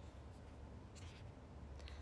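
Near silence: room tone with a steady low hum, and a faint click about a second in.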